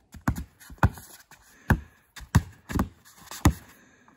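A basketball being dribbled on a wooden deck-board court: about six bounces, each a hollow thump off the boards, roughly one every half second to second.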